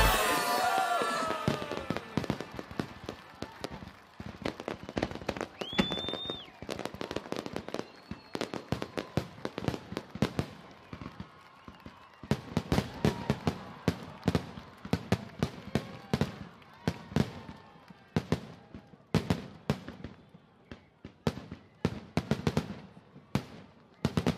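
Fireworks display: aerial shells bursting with repeated bangs and crackling, coming thicker in the second half, and one short high whistle about six seconds in. The tail of a song fades out in the first couple of seconds.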